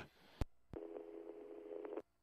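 Police two-way radio: two sharp clicks, then a steady low tone of several pitches sounding together for over a second, which cuts off abruptly.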